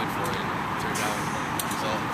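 A man's voice speaking in an interview answer over a steady, even rushing noise.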